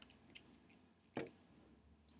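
Faint scattered ticks and light rustles of floral tape being pulled and wound around a pen stem by hand.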